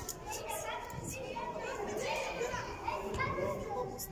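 Children's voices shouting and calling over one another during a youth football match, echoing in a large indoor sports hall.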